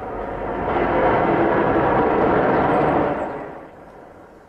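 A car driving past: a rush of engine and tyre noise that swells up, holds for about two seconds, then fades away near the end.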